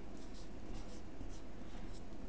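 Marker pen writing on a whiteboard, faint short strokes as figures are written.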